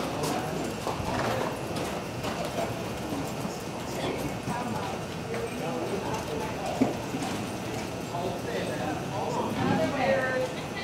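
Indistinct murmur of spectators' voices, with the hooves of horses and cattle moving on soft arena dirt, and a short sharp knock about seven seconds in.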